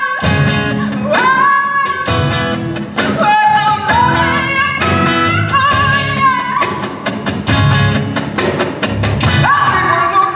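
Live acoustic band music: a woman sings long, wavering held notes over a strummed acoustic guitar and bass guitar.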